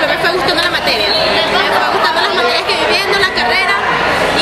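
Speech throughout: a young woman talking close up over the chatter of several other students talking at once around her.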